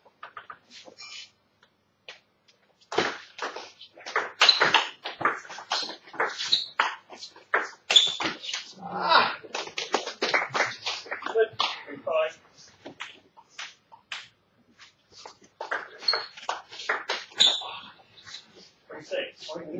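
Table tennis ball clicking off bats and bouncing on the table in a fast rally, then voices; more ball bounces near the end.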